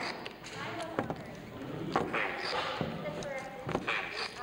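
Sensor-fitted platform sandals stamping on a tabletop, each step triggering short electronic sounds generated by the shoes' own microcontroller: irregular thuds with bursts of hiss and quick falling tones.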